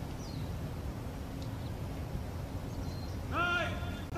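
Steady outdoor background noise with faint bird chirps, then about three seconds in a loud, drawn-out shouted drill command to the rifle firing party.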